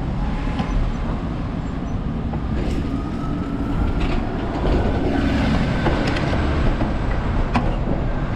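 Street traffic passing close by, a car and then an MBTA city bus driving past with its engine running and a faint rising whine, over a steady low rumble. A few sharp clicks stand out.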